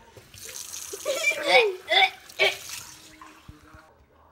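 Water running from a kitchen tap into a stainless steel sink, stopping about three seconds in.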